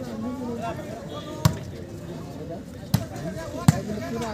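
A volleyball struck by players' hands during a rally, three sharp smacks about a second and a half, three seconds and three and a half seconds in, the last the loudest, over crowd voices.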